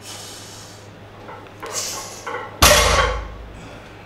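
A loaded barbell is set down onto the gym floor with one heavy thud and a short rattle of its plates, about two and a half seconds in, at the end of a 100 kg deadlift rep. Quick noisy breaths come before it.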